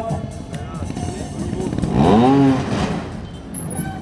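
Trials motorcycle engine revved in one sharp burst about two seconds in, its pitch rising and falling, as the bike hops up onto a raised platform.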